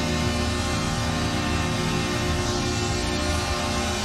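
Arena goal horn sounding a steady, held chord over a cheering crowd, the celebration of a home-team goal.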